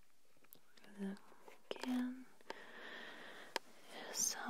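Soft whispering voice between phrases: two brief murmured sounds about one and two seconds in, with a few faint clicks.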